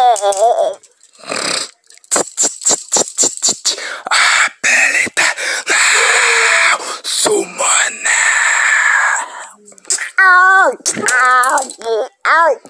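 Wordless vocal noises: a run of sharp clicks and a stretch of hissing, then a voice wailing in sounds that rise and fall in pitch near the end.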